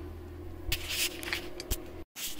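Light rustling and scraping handling noise with a few small clicks, over a faint low hum; the rustling starts a little under a second in.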